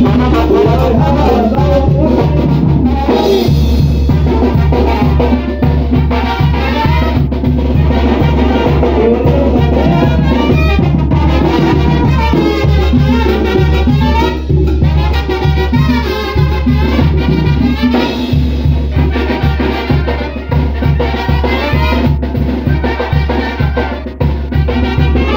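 Live brass band playing Latin dance music, with trumpets and trombone over drums keeping a steady beat.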